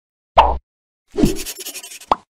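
Cartoon sound effects: a single sharp plop about a third of a second in, then a longer, noisier effect from just past a second, with a short rising tone at its start.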